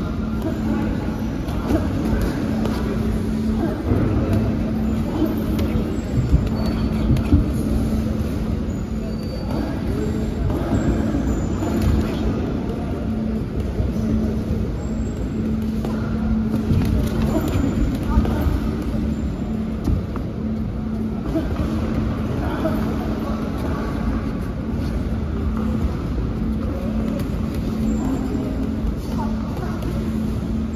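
Boxing sparring in a ring: occasional soft thuds of gloved punches and footwork on the canvas over a steady low hum and indistinct background voices.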